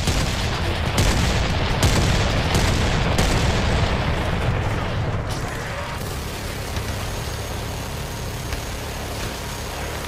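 Edited battle sound effects: dense, continuous gunfire with booms and a rumbling low end, with several sharp blasts in the first five seconds, easing off a little after about six seconds.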